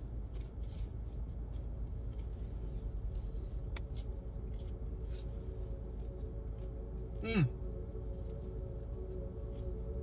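Crisp crunching as a deep-fried egg roll with a crispy wrapper is chewed, a few sharp crackles over a steady low hum inside a car, with a hummed 'mmm' of approval about seven seconds in.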